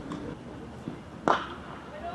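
Cricket bat striking the ball once, a single sharp crack about a second and a quarter in, as the batsman plays a scoring shot. Faint voices and outdoor background are underneath.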